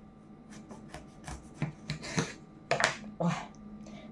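Kitchen knife sawing through a large tomato in a series of short rasping strokes, ending about three seconds in.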